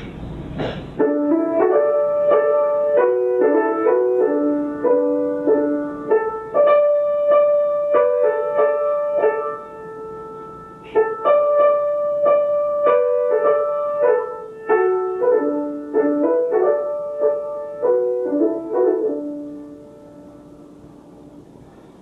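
Grand piano playing a slow hymn-like passage in which two or three voices move together in parallel thirds and fourths, a keyboard rendering of folk parallel-organum singing. The playing stops a couple of seconds before the end and the last chord dies away.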